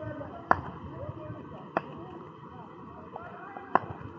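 Quiet outdoor background with faint distant voices and three short sharp taps or clicks: one about half a second in, one just before the middle and one near the end.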